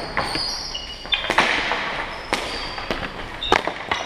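Ball hockey play in a gym: a run of sharp clacks and knocks from sticks and the ball, about eight in four seconds, each ringing briefly in the hall.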